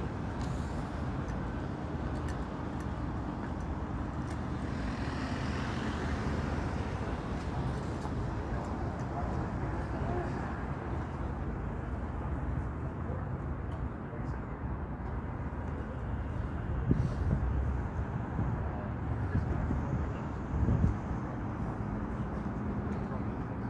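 Steady city street traffic noise with indistinct voices in the background, and a couple of low thumps near the end.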